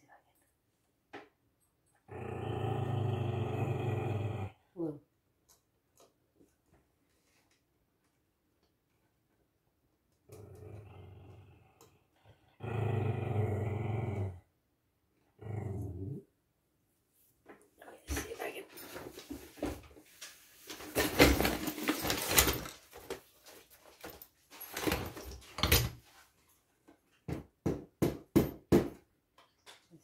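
Dogs growling in several long, drawn-out growls, then a busy stretch of scuffling and knocking noise. Near the end comes a run of separate sharp taps from a rubber mallet seating a small brass keyhole escutcheon into a wooden drawer front.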